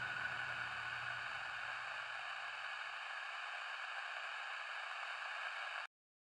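Steady static-like hiss, with a low rumble and a faint high tone dying away in the first couple of seconds. The hiss cuts off suddenly just before the end.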